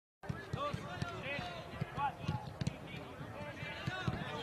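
Several men's voices calling out across an open training pitch in short, scattered shouts, over repeated dull low thuds.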